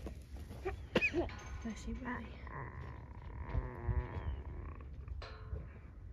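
Cattle mooing: a short rising call about a second in, then one long drawn-out call through the middle.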